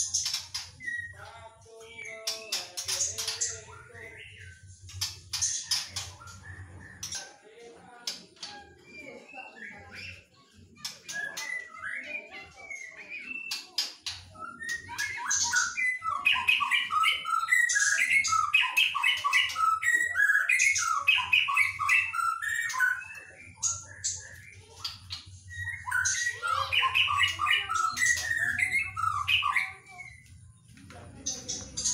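A young wild-caught white-rumped shama (murai batu), about a year old, singing in its cage. The first half has scattered short calls and sharp clicks. From about halfway there are long loud runs of varied, warbling song, with a short break shortly before the end.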